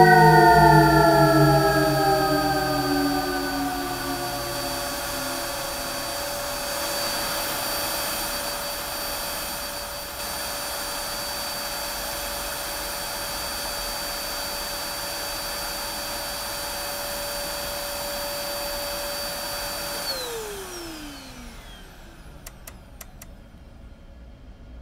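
Upright vacuum cleaner running on carpet with a steady whine. About 20 seconds in it is switched off, and the motor winds down with a falling pitch.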